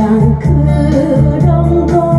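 A woman singing a Korean song into a microphone over a karaoke backing track with a steady beat.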